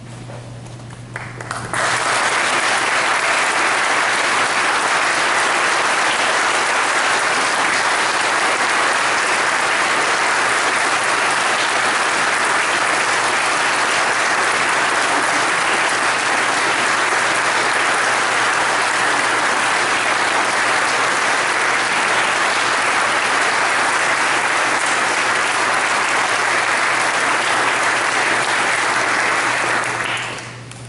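Congregation applauding. The applause starts about two seconds in, holds at a steady level, and stops at the very end.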